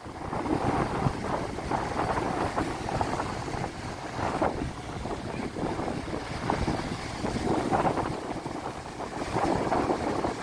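Wind buffeting the microphone in gusts over the continuous wash of breaking surf.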